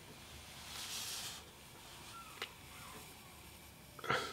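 Faint pencil strokes on paper: one soft scratching stroke about a second in, then a light tick a little later.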